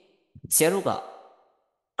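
Speech only: a lecturer's voice says one drawn-out word that begins with a hiss and falls in pitch, followed by a short pause.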